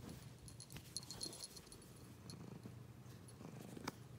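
Tabby cat purring faintly close to the microphone, a steady low rumble, with a few light clicks and rustles of fur and blanket and a sharper click near the end.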